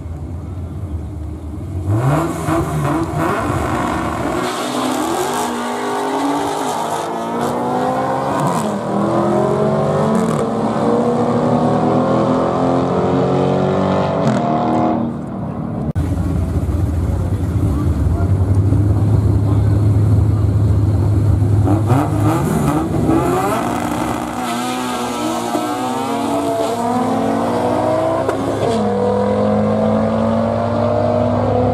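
Two drag-race launches: hard-accelerating car engines, each rising in pitch and dropping back at every gear shift. After a cut about halfway, a steady engine drone is held at the start line, then the 1988 Honda Civic with its swapped H22A four-cylinder and B16 gearbox launches and revs up through its gears.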